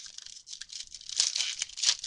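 Plastic wrapper of a 2012 Panini Rookies and Stars football card pack being torn open and crinkled by hand: a dense crackling rip that gets loudest in the second half.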